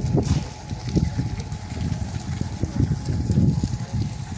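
Wind buffeting the microphone in uneven low rumbles.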